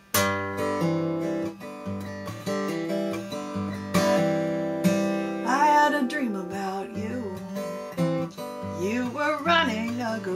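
Steel-string acoustic guitar, fingerpicked, starting the song's intro with a sudden first note after near silence; a woman's voice comes in singing about five and a half seconds in.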